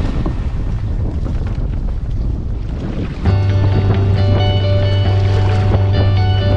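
Wind buffeting the microphone and water rushing along the hull of a Hobie Wave catamaran under sail, a steady low rumble and hiss. About halfway through, background music comes in over it.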